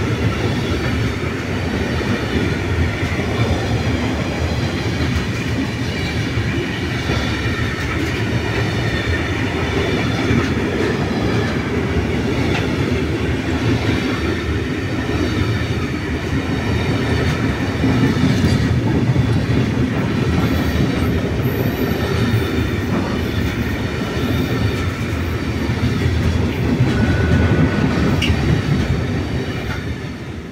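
Container wagons of an intermodal freight train rolling steadily past at speed, a continuous rumble of wheels on the rails. The last wagons clear right at the end and the sound falls away.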